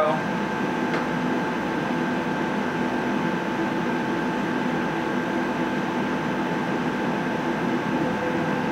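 Steady machine hum and whir of the running fans and pumps around a CO2 laser engraver, with a few steady tones, holding level throughout.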